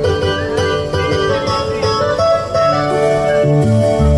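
Instrumental introduction of a karaoke backing track, with plucked string notes over a steady accompaniment and no singing yet.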